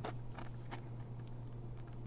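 Faint small clicks and scrapes of a test lead's clip being fitted to the tiny connector of an LED backlight panel, over a steady low hum.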